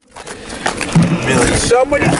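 Men's voices talking over a low rumbling noise, cutting in abruptly after silence and loudening within the first second.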